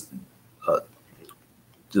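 One short, low vocal sound from a man, a little under a second in, during a pause in his talk.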